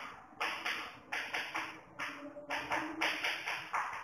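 Chalk writing on a blackboard: a quick, irregular run of short taps and scratches, about a dozen strokes.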